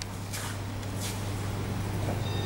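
Quiet background: a steady low hum with faint noise and two soft, brief rustles.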